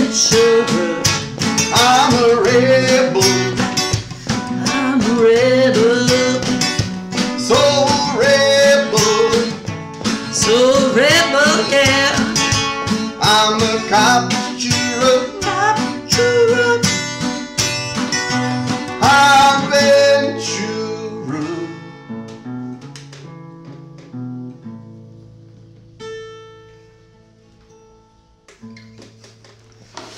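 Two acoustic guitars strummed with a man singing a cowboy song. About two-thirds of the way through the song ends, and the last chords and a few picked notes ring out and fade away.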